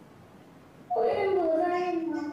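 A child's voice about a second in: one drawn-out vocal sound that starts high and slides down in pitch, lasting just over a second, after a near-silent pause.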